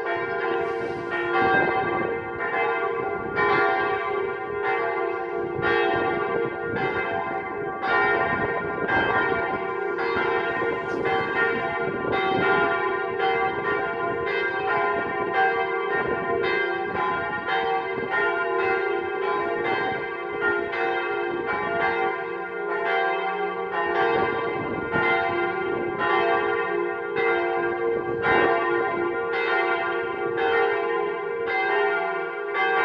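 Swinging church bells of the Salviuskerk in Dronrijp rung as a partial peal (deelgelui): several bells strike in a steady, overlapping rhythm, with their tones ringing on continuously.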